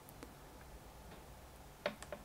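Faint room tone with one or two soft isolated clicks, then sharp computer keyboard key clicks near the end as typing begins.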